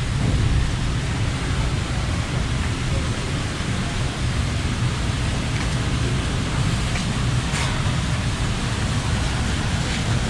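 Steady rushing noise with a heavy low rumble, even throughout: the background roar of a large store's interior as picked up by a handheld camera's microphone.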